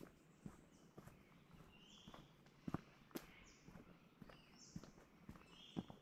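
Faint footsteps of a hiker walking on a dirt and leaf-litter forest track, about two steps a second.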